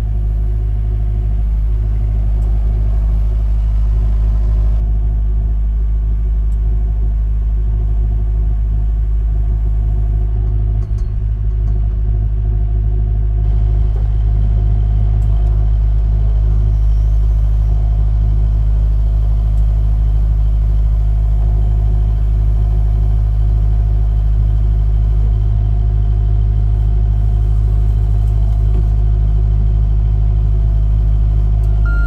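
John Deere 50G compact excavator's diesel engine running steadily, a deep even rumble with a constant pitch.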